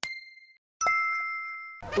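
Two bell-like chime sound effects: a short single ding that fades quickly, then a brighter chime of several ringing tones that sounds for about a second and cuts off abruptly.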